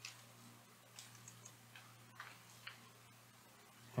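Faint computer keyboard keystrokes, about half a dozen separate clicks spread over the first three seconds, over a low steady hum.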